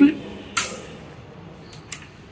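Banana-plug test leads clicking as they are handled and pushed into the sockets of an op-amp trainer board: one sharp click about half a second in, then two quick clicks near the end.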